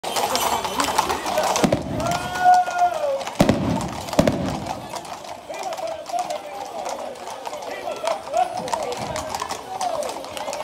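People calling out and talking, with one long held shout about two seconds in, over horses walking on a paved street: three loud sharp knocks in the first half and lighter hoof ticks after.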